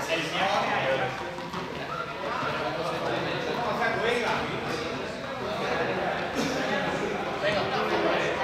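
Several voices chattering at once in a large hall, with scattered light knocks of juggling balls and footsteps on the hard floor.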